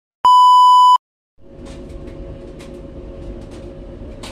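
A loud test-tone beep held steady for about three quarters of a second, the tone played with colour bars. After a brief silence, a steady low background hum starts, with a few faint clicks.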